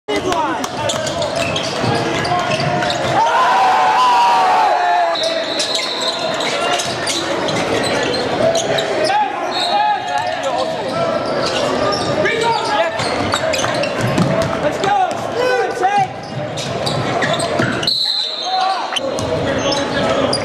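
Live basketball game audio in an echoing gymnasium: a basketball bouncing on the hardwood floor in many short knocks, with players and spectators shouting and talking throughout.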